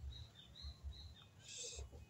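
Faint outdoor ambience with several short, high bird chirps in the first second and a brief hiss about one and a half seconds in.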